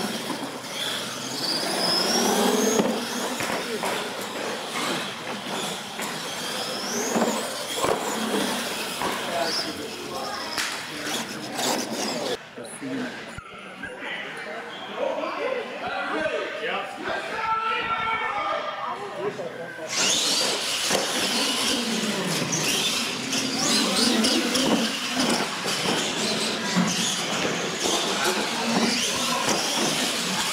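R/C monster trucks racing across a concrete floor, their motors whining and rising and falling in pitch as they accelerate, with voices of onlookers in the hall. The sound drops and thins out for several seconds in the middle, then comes back at full level.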